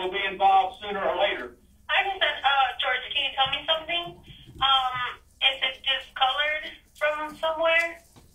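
Speech heard over a telephone line from a recorded call being played back, the voices thin and narrow, with a short pause about a second in.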